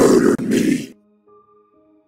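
A man's voice shouting a line loudly and harshly in two bursts, stopping just under a second in, followed by soft background music with held notes.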